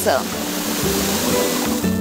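Steady hiss of chocolate drink powder pouring from a tub into bathwater, over background music.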